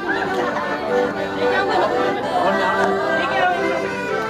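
A crowd chattering, many voices talking at once, over background music with steady held notes.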